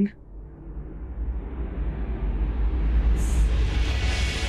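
Low, deep suspense-music drone swelling steadily louder, with a brief high hiss about three seconds in.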